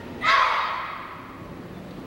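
A group of children shouting once in unison, a taekwondo kihap, about a quarter second in, with a brief echo trailing off after it.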